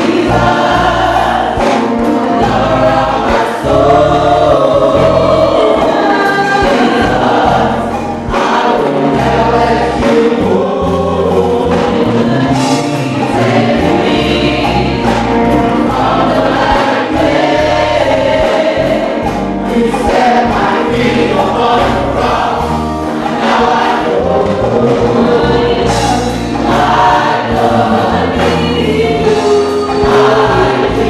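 Church choir singing a gospel hymn into microphones, amplified through loudspeakers, over a moving bass accompaniment.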